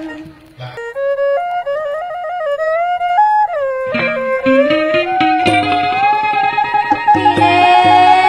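Khmer traditional wedding ensemble playing: after a brief pause, a lone melody instrument plays a gliding, ornamented line, and about four seconds in a drum beat and the rest of the ensemble join in.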